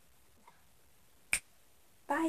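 A single short, sharp click, past the middle, over faint room tone.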